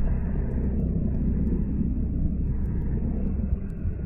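Wind rumbling steadily on the camera microphone.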